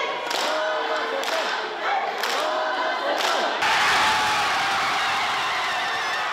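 Crowd of sumo fans calling out and shouting encouragement, then about three and a half seconds in breaking suddenly into a loud, sustained roar of cheering as their wrestler wins the bout.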